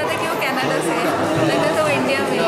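Speech only: a woman talking, with other people chattering in the background.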